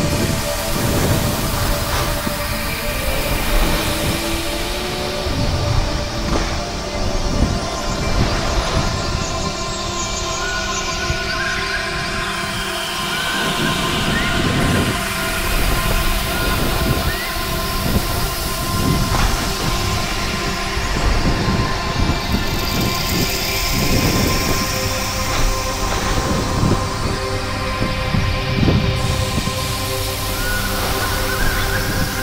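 Snow sports gear scraping and rumbling continuously over hard-packed snow on a fast descent, with the rough, surging noise of wind buffeting a body-worn action camera's microphone.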